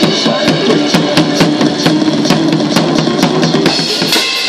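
Acoustic drum kit played with sticks in a fast, dense pattern of drum and cymbal strikes, several hits a second.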